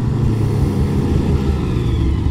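Arctic Cat Catalyst 600 snowmobile's twin-cylinder two-stroke engine running on the trail, with a faint high whine over it; a sound the rider calls mean.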